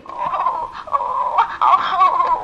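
Electronic Hatchimal dragon toy making a string of short, wavering chirps and warbling baby-creature calls through its small built-in speaker.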